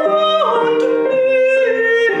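Mezzo-soprano singing with piano accompaniment: a held note that steps down to a lower sustained note about half a second in.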